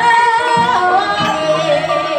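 Javanese gamelan playing a gending: bronze bonang kettle gongs and metallophones ring steady notes under kendang drum strokes. A sinden's voice glides and wavers over the top.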